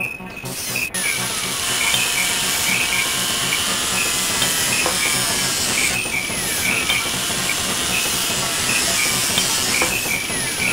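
A loud, dense hissing noise texture that comes in right at the start and then holds steady. Slow sweeping tones glide down and up in pitch through it, over a steady high tone dotted with short chirps.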